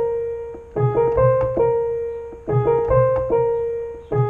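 Piano sound played from a MIDI keyboard, both hands. Low left-hand notes sit under a repeating right-hand figure over D-flat major and C minor chords. Each phrase starts again every one and a half to two seconds, and its notes fade between strikes.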